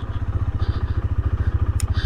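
Motorcycle engine running at low revs as the bike rolls off slowly, its exhaust pulsing evenly and rapidly. A single sharp click comes near the end.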